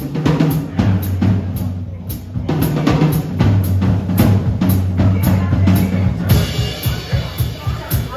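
Jazz drum kit solo: a steady driving beat of low tom and bass drum hits, about four a second, with snare strokes; cymbals wash in over the last two seconds.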